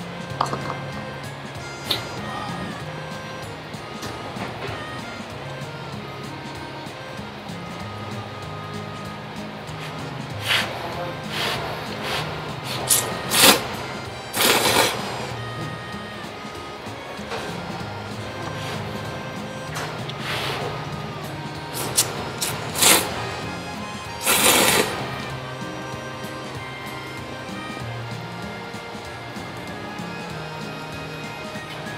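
A person slurping thick ramen noodles over background music: a run of short slurps about a third of the way in, then another run later, each run ending in a longer slurp of about a second.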